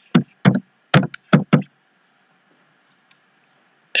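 Computer keyboard keys being typed: about half a dozen sharp keystrokes over the first second and a half as the last letters of a word are entered.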